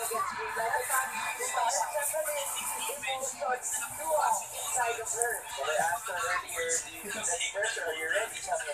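Sports commentators talking over a volleyball broadcast, played through a television's speaker and picked up in a small room.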